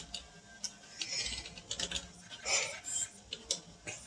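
All-lead-screw 3D printer with closed-loop stepper motors running a print: quiet, irregular ticks and clicks from the moving axes, with a brief swell of motor sound about two and a half seconds in.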